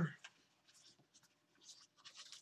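Faint, brief rustling and scraping of something being handled near the microphone, a few times, after a man's voice trails off at the start.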